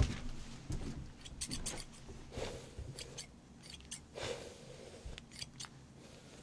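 Hair-cutting scissors snipping hair in short runs of quick snips, about one and a half seconds in and again near the end, with soft rustling of hair between.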